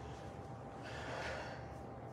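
A man's audible breath in, about a second in, during a pause in speaking, over faint room tone with a thin steady hum.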